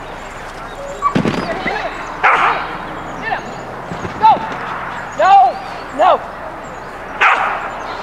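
A dog barking repeatedly, about seven short barks roughly a second apart. Some are high and rise and fall in pitch, others are harsher.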